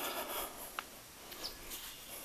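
Two short, high bird chirps, about a second in and again half a second later, over faint rustling.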